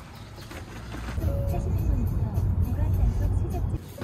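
Loaded hand cart's small wheels rolling over brick pavers: a loud low rumble that starts about a second in and cuts off abruptly just before the end.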